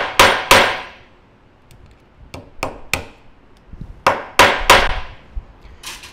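Hammer striking the end of an unannealed copper rivet set through sheet metal on a steel bench block: sharp metallic blows with a brief ring, coming in quick runs about a third of a second apart. Two loud blows open it, three lighter taps follow about two seconds in, three loud blows come about four seconds in, and a light tap near the end.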